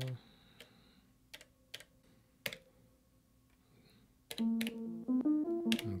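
Clicks of the Elektron Octatrack MKII's buttons being pressed, then from about four seconds in the Octatrack plays its programmed sequence: a synth line of short pitched notes stepping up and down.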